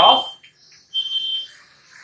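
Chalk scratching on a chalkboard as letters are written, with a short high-pitched chalk squeak about a second in.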